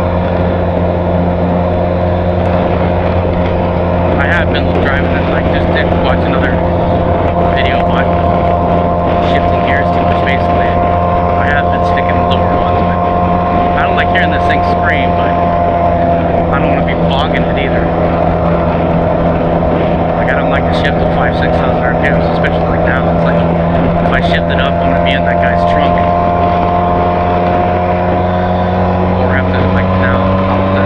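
Benelli TRK 502 parallel-twin engine and exhaust running at a steady cruising speed, heard over wind rushing past the microphone. The engine note holds almost level throughout.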